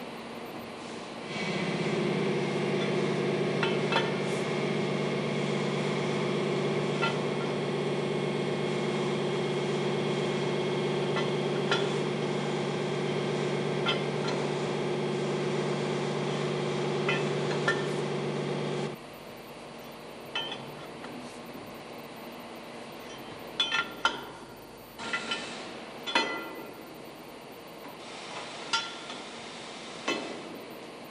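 Metal clinks and knocks of a spanner on the chain-tightener bolt's lock nuts as they are loosened. Under the first two-thirds runs a steady machine hum made of several tones, starting suddenly about a second in and cutting off suddenly; more clinks and knocks follow against quieter room noise.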